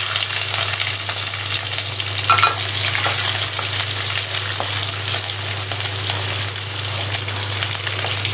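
Halved shallots sizzling in hot oil in a nonstick pan, stirred with a wooden spatula. A steady low hum runs underneath.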